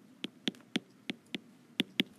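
A stylus tapping and ticking against an iPad's glass screen while handwriting, giving about seven short, sharp clicks at an uneven pace.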